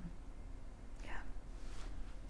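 A woman says a quiet, breathy 'yeah' about a second in, with faint room tone around it.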